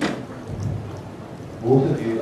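A sharp thump at the start followed by a low rumble, then a man's voice briefly near the end.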